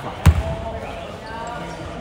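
A basketball bouncing once on the gym floor close by, a sharp single thud about a quarter second in.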